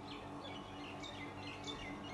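Whiteboard marker squeaking against the board as it writes, a string of short high squeaks, with a faint steady hum beneath.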